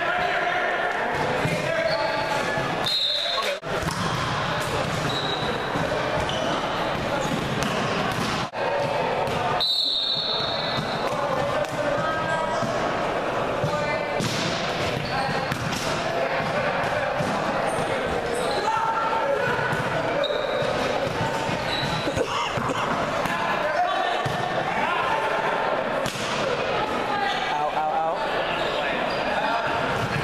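Volleyball game sounds in an echoing gymnasium: ongoing chatter and calls from players and spectators, with the ball being struck and hitting the floor.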